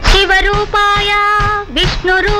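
A woman's high voice singing an old Telugu film song over its music: short phrases of held notes, with a quick dip and rise in pitch near the end.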